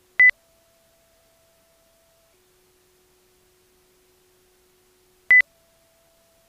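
Two short, sharp electronic beeps about five seconds apart. Under them a faint steady tone steps between a lower and a higher pitch every couple of seconds.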